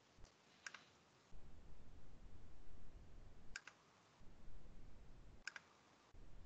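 Three sharp clicks at a computer, each a quick pair of strokes: one about a second in, one about halfway through and one near the end. Under them runs a faint low background rumble that drops out around each click.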